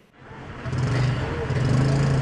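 An engine running steadily with a low, even hum, fading in over the first half-second under a wash of outdoor noise.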